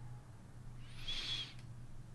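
A soft breath through the nose with a faint thin whistle, about a second in, over a low steady hum.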